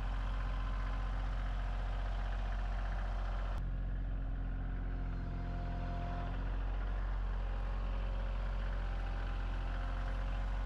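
Kioti CK2610 compact tractor's three-cylinder diesel engine running steadily under light load while the loader grapple lifts and carries a log. A single sharp click comes about three and a half seconds in.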